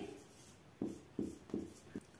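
Marker pen writing on paper: about four short, faint strokes.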